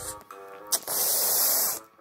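A loud burst of hiss, about a second long, over soft background music.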